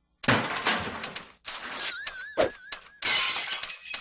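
Crashing and shattering sounds of things being smashed: several sharp impacts after a brief silence, a short warbling tone about halfway, and a dense clatter through the last second.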